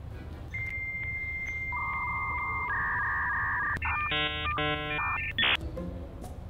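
Synthesized electronic beeps: a held high beep, then lower held tones that overlap it, then a quick run of stacked chiming beeps and a short sharp tone near the end.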